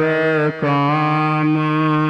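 Sikh Gurbani kirtan: a voice sings the end of a line of the Shabad, breaks briefly about half a second in, then holds one long note over a steady harmonium drone.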